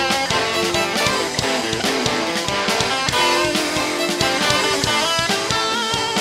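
Live rock band playing: electric guitars over bass guitar and a drum kit keeping a steady beat.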